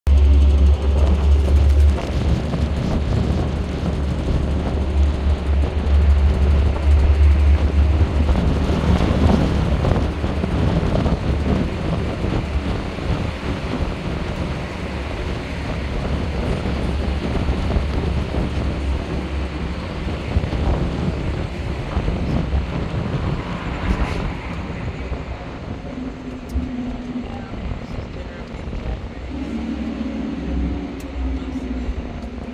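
Wind buffeting the microphone, with road and engine rumble from a moving bus, heard from its open upper deck. The low rumble is heaviest in the first ten seconds and eases after that.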